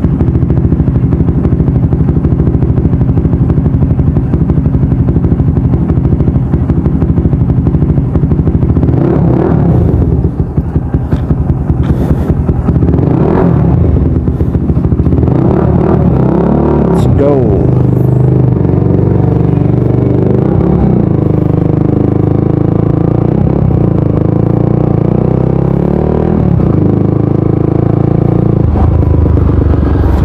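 Motorcycle engine running close by, a loud steady drone, with a few brief rises and falls in pitch in the middle.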